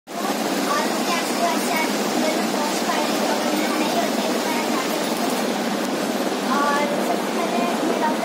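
A steady, loud noise with faint, indistinct speaking voices in it.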